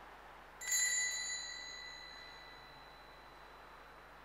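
Small altar bell rung once by the altar server, a bright ring with several clear overtones that fades away over two to three seconds.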